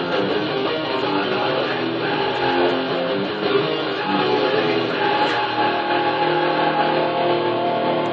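Electric guitar playing a rock riff, settling into held, ringing chords about five seconds in.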